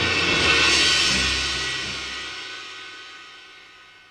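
Dramatic background score: a cymbal shimmer over a low drone that fades away gradually, the drone stopping about halfway through.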